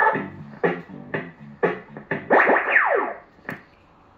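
A CB radio caller box playing its sixth caller-in sound effect, a short synthesized jingle. It runs as a quick series of electronic notes, then several whistle-like tones gliding downward, and ends in a single click.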